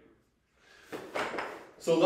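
Rustling and a few soft knocks as a person lets go of a resistance band and shifts position on a foam kneeling pad on a rubber gym floor.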